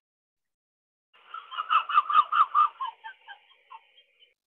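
A chicken clucking, starting about a second in with a fast run of calls, then a few scattered single clucks near the end, heard through the compressed, noise-gated audio of an online call.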